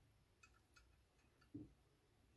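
Near silence: faint room tone with a few scattered soft ticks, and one soft low thump about three-quarters of the way in.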